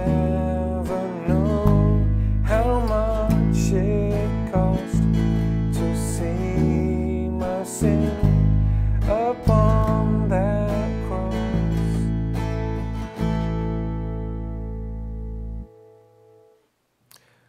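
Bass guitar playing long held root notes, a new note every second or two, under strummed acoustic guitar chords and a sung melody. The last chord rings out and stops suddenly shortly before the end.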